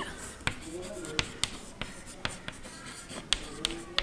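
White chalk writing on a chalkboard: a quick, uneven run of sharp taps and short scratches, two or three a second, as each letter is struck and drawn.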